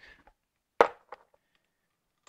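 A single sharp click about a second in, followed by two faint ticks: small metal Allen head screws being handled and set into the metal plate that mounts the bag's bottom spring to its plastic base.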